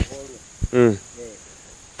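Steady high-pitched insect trilling in the background, with a couple of sharp clicks and short murmured vocal sounds over it.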